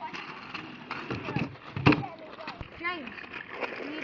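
Kick scooter clattering onto a small skate ramp on tarmac, with one loud sharp clack about two seconds in, among scattered smaller knocks and children's voices.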